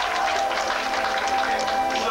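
Live rock band playing, with electric bass, drums and guitar; one long note is held through most of the moment over the drums and cymbals.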